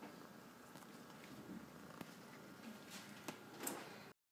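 Domestic cat purring quietly close to the microphone, with a single soft click about halfway through and a brief rustle near the end.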